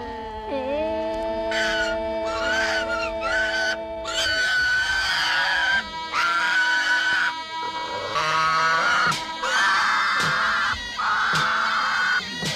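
A pig squealing in loud, repeated cries, each about a second long with short breaks between, as it is held down on a bench for slaughter. Film score with long held notes plays underneath.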